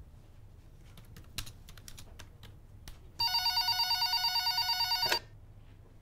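Electric doorbell ringing for about two seconds with a fast fluttering trill, starting about three seconds in and cutting off sharply, after a few faint clicks.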